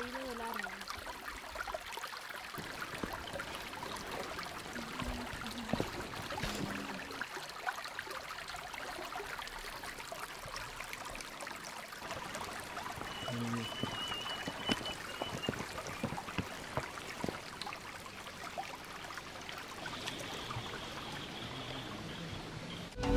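Shallow forest stream trickling steadily, with a brief high chirping call a bit past the middle.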